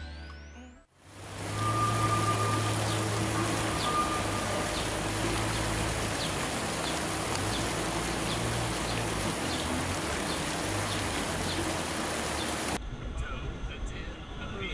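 Background music fades out in the first second. A steady rushing outdoor noise with a low hum follows, with a few faint high ticks, and it cuts off suddenly about a second before the end.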